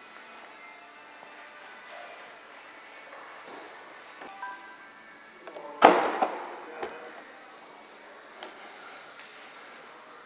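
A sharp clunk about six seconds in as the boot-lid latch of an Aston Martin Vanquish Volante is released, followed by two lighter knocks as the lid rises, over faint background music.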